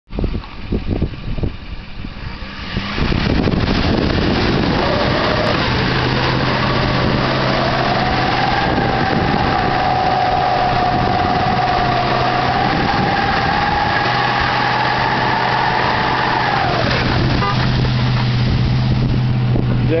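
Pickup truck stuck in mud, its engine revved hard with the wheels spinning and throwing mud. The revs climb a few seconds in, hold high for about ten seconds, then drop off near the end.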